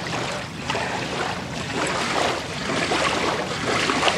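River water lapping and splashing at the shoreline in an irregular wash, with some wind.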